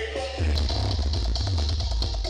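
Music played very loud over a truck-mounted "sound horeg" sound system, with a heavy deep bass that swells in about half a second in and a steady beat.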